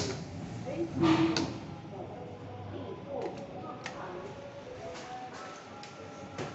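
Inside a Schindler lift car: a button clicks as it is pressed, then voices speak in the car, and near the end the lift doors slide open.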